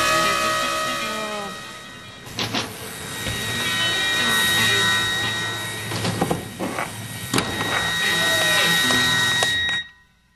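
Rock music, the closing bars of a late-1960s psychedelic rock song, with sustained guitar tones and a few sharp knocks. It cuts off suddenly just before the end.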